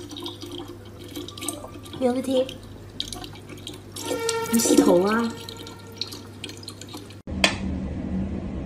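A thin stream of tap water running into a plastic bottle as a cat bats at it. Near the end, after a sudden cut, one sharp tick from a mechanical pyramid metronome.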